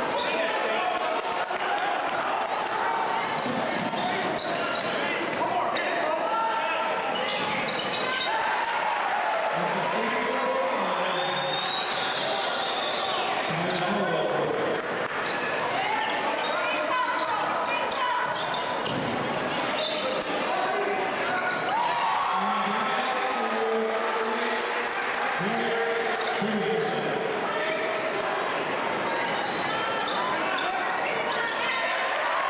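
Basketball game in a gymnasium: continuous chatter and shouts from the crowd in the bleachers, echoing in the hall, with the ball bouncing on the hardwood court.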